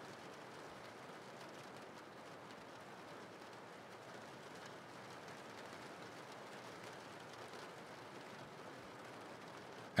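Soft, steady rain with an even hiss and no distinct drops or thunder.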